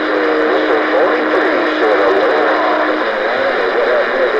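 CB radio receiving a crowded band during rough skip conditions: loud static with several garbled, warbling voices talking over one another. A steady tone runs under it and stops about three seconds in.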